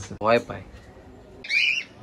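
A cage bird gives one short, high call about one and a half seconds in, after the end of a man's sentence.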